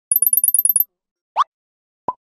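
Cartoon sound effect on a loop: a quick run of high, tinkling ticks lasting under a second, then a single short upward-sliding "boing" chirp about a second and a half in.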